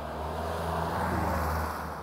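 A vehicle passing close by: a low engine hum with a rush of noise that swells to its loudest about a second in and eases off near the end.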